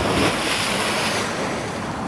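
Rushing spray and churning water from a person's jump into the sea, the hiss of falling spray strongest for about the first second and then settling. Steady wind on the microphone runs underneath.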